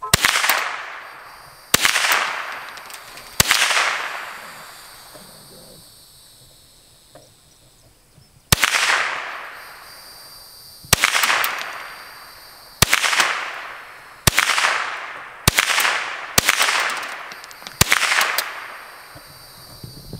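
Ten rifle shots from a .22 rifle, fired one at a time at an uneven pace. There is a pause of about five seconds after the third shot. Each crack trails off in a long echo.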